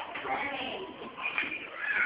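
Several high young voices chattering and calling out over each other in a room, no single speaker clear, with a sharp knock right at the start.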